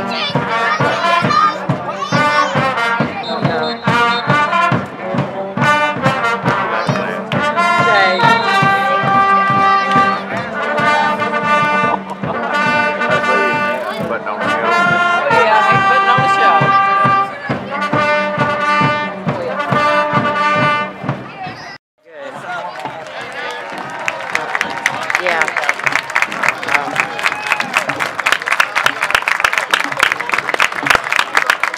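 A school pep band's trumpets and other brass horns play a tune over a steady beat. About twenty-two seconds in, the music cuts off abruptly and is followed by crowd noise with clapping.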